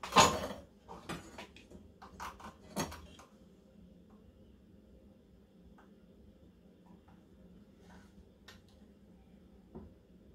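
A long steel strip clacks down onto the wooden workbench, the loudest sound, followed by a few lighter metal clicks and knocks in the first three seconds. After that come only faint scattered ticks and scratches as it is held and worked along.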